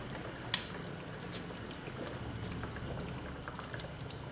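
Hydrogen-oxygen gas from an HHO generator bubbling steadily through water, with a low steady hum and one sharp click about half a second in.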